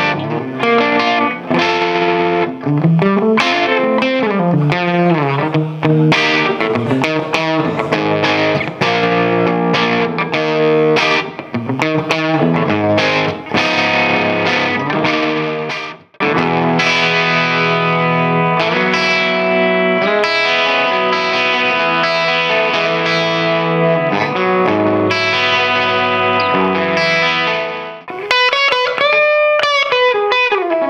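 A 1968 Gibson Les Paul Custom electric guitar played through a 1967 Marshall plexi amplifier. It opens with a run of quickly picked single notes, pauses briefly about halfway, then moves to held chords and notes, with notes bent and wavering in pitch near the end.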